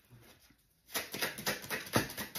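A deck of oracle cards being shuffled in the hands, a quick run of papery flicks starting about a second in. It ends in a sharp snap as a card is pulled from the deck.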